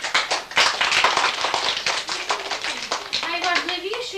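Audience applause: many hands clapping quickly and densely, dying down after about three seconds, as a child finishes reciting a poem.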